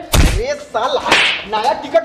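A sudden loud smack with a deep thump right at the start, then brief shouted voices and a short rush of noise about a second in, as in a scuffle.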